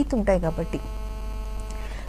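A woman's speech trails off in the first part, then a steady electrical hum with a buzz of several fixed pitches holds until speech is about to resume.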